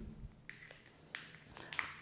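A few faint clicks and light rustles from a coiled wired earphone set and its wrapper being handled.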